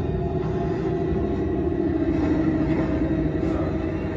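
A film's soundtrack heard in a cinema auditorium: a steady low drone with a held tone and no dialogue.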